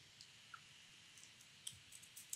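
A few faint, separate computer keyboard keystrokes at an irregular pace, more of them in the second half, over a quiet background.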